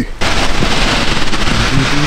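A loud, dense crackling noise that starts suddenly and runs on steadily, with background music notes coming in beneath it about a second in.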